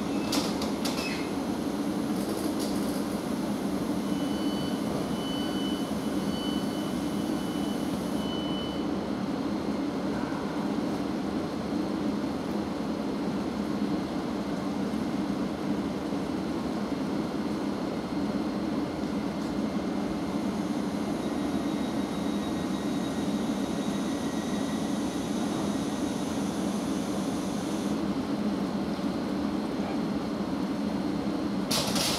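Thameslink Class 700 electric multiple unit standing at the platform, its onboard equipment humming steadily. A run of short high beeps sounds from about four to eight seconds in.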